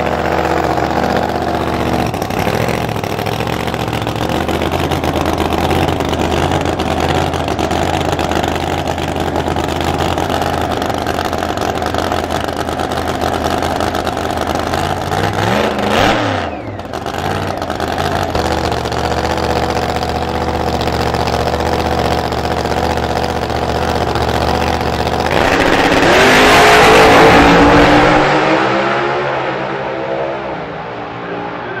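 A drag racing car's engine idles with a steady, lumpy rumble at the start line, with a short swing in pitch about halfway. Near the end it launches at full throttle: the pitch climbs, it gets loudest about two seconds in, then it fades as the car runs away down the track.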